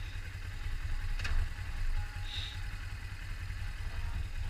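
2004 Suzuki GS500 E's air-cooled parallel-twin engine idling, a steady low rumble, with a sharp click about a second in and a brief high chirp a little after two seconds.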